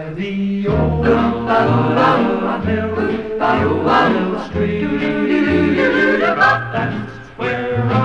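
Swing vocal choir singing in close harmony over a small band with a moving bass line, from a 1950s mono recording.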